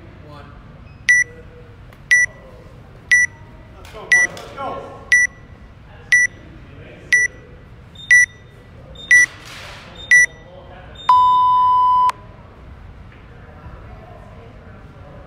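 Electronic gym interval timer counting down: ten short high beeps a second apart, then one longer, lower beep, the start signal for the workout.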